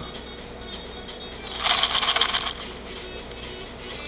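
Perlite granules rattling in a clear plastic bottle as it is shaken, about a second of dry, rapid rattling starting roughly one and a half seconds in.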